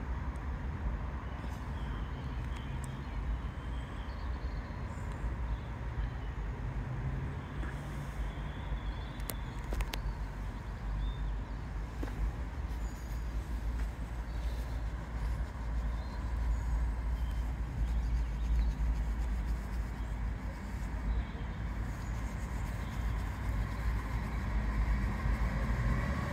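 Low, steady rumble of an approaching passenger train, growing slightly louder toward the end as it nears the platform.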